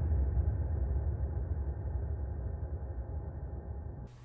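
Deep, low rumble from an edited-in transition, slowly fading and then cut off abruptly at the end.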